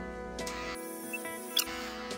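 Soft background music holding steady tones, with a brief high squeak about a second and a half in.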